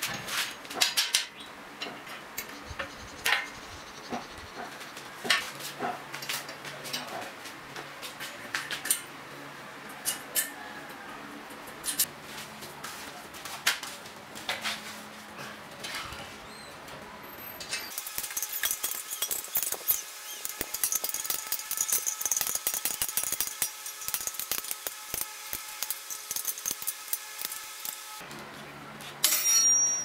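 Scattered metal clinks and knocks as an electric motor is handled and fitted onto a welded steel frame, then a power tool runs for about ten seconds with a fast rattle. A loud clatter comes near the end.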